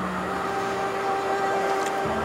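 Background music score: a soft chord of a few long held notes. The lowest note fades out about halfway through, and the highest note sounds only through the middle.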